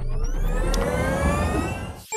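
Sound effect of a vehicle speeding up: a whine that rises steadily in pitch over a low rumble for about two seconds, then drops away.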